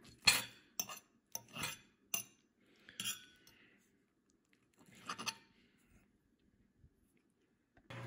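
A fork clinking and scraping on a plate as it cuts through an omelette: several light, separate clinks in the first three seconds and one more about five seconds in.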